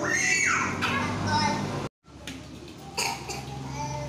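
Children's voices as they play: a high cry with a falling pitch at the start, then scattered chatter and calls. The sound cuts out completely for a moment just before the middle.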